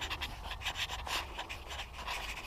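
A dog panting rapidly, a quick regular run of short breaths.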